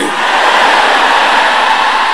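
A large congregation shouting and praying aloud together: a loud, steady wash of many voices with no single voice standing out.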